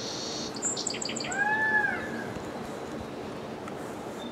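Bird calls: a quick run of high chirps in the first second, then a single arching call that rises and falls in pitch about a second and a half in.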